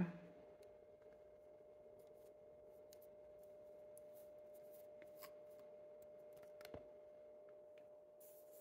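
Near silence over a steady faint hum, with a few soft clicks and small handling noises, the clearest near the end, as a Lamy 2000 piston-filling fountain pen is filled with ink.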